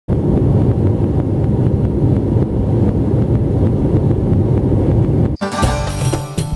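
Airliner cabin noise: the steady low rumble of the jet engines heard from a window seat over the wing. About five seconds in it cuts off suddenly and percussive music starts.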